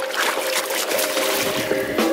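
Shallow creek water splashing and sloshing as a Murray cod is released by hand and kicks away through the surface, a quick run of wet splashes.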